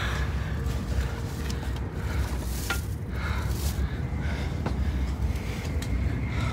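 Steady low rumble of a Shinkansen passenger car running, heard from inside the cabin, with brief clicks of the phone being handled near the microphone.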